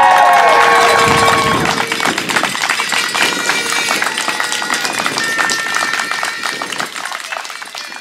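A crowd cheering with high whoops, then clapping and cheering that fades away near the end.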